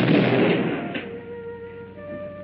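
A cartoon explosion sound effect: a sudden loud blast that dies away over about a second, followed by held notes of the orchestral score.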